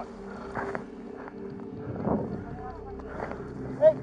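Footsteps and rustling of brush and dry leaves as a person scrambles through undergrowth, over a steady low hum, with faint voices in the background and a loud shout of "Hey" at the very end.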